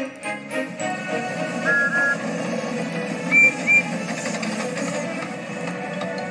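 Background music with a small steam engine's whistle tooting twice, then twice again higher and louder.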